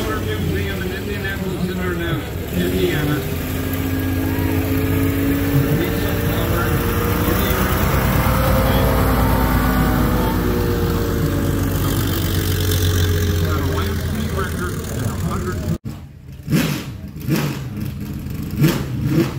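Diesel engine of the Cummins Diesel Indianapolis race car running as the car drives past, its pitch rising and then falling away. Cuts off abruptly near the end.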